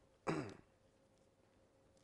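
A man clears his throat once, a short sound falling in pitch, near the start.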